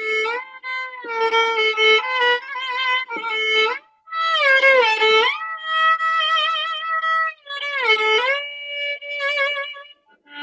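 Solo violin, bowed, playing a slow melody. The notes slide up and down between pitches and waver with vibrato, with a short break about four seconds in.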